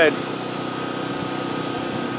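Steady mechanical hum with several constant tones, like a motor or engine running without change.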